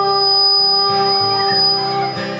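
A song with acoustic guitar: a singer holds one long, steady note over regularly strummed guitar chords.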